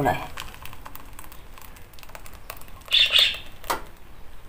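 Thick red bean and oat soup poured from a pot into a ceramic bowl: a run of small splashes and plops, with a louder noisy burst about three seconds in and a sharp click just after it.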